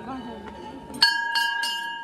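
A hanging temple bell rung by hand. A ringing tone carries on from an earlier strike, then the bell is struck about a second in and three more times in quick succession, about three strikes a second, each leaving a clear ringing tone.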